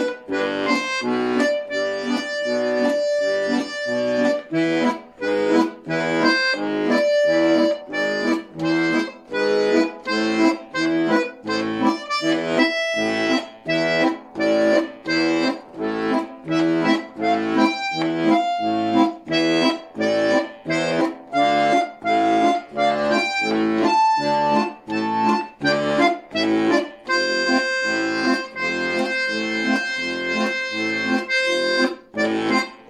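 Bayan (Russian button accordion) playing a song in A minor with both hands: a sustained right-hand melody over a steady left-hand bass-and-chord accompaniment pulsing about twice a second.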